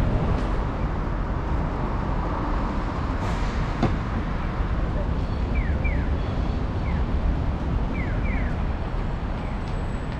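Busy city street ambience at a pedestrian crossing: a steady rumble of traffic with a wash of street noise, and a few short, high, falling chirps in the second half.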